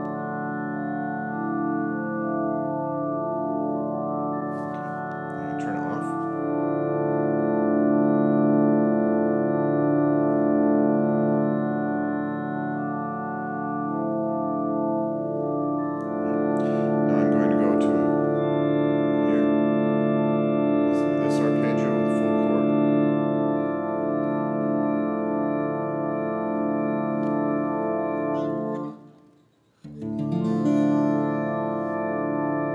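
Acoustic guitar strings driven by the Vo-96 acoustic synthesizer, sustaining an organ-like chord while a repeating arpeggio pulses through the lower notes. A few brief noisy strokes across the strings come about five, seventeen and twenty-one seconds in. Near the end the strings are damped by hand and the sound cuts off suddenly.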